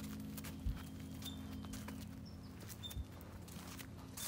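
Soft footsteps and light clicks as the camera is carried along, with two low thumps, over a steady low hum. A few short high chirps sound now and then.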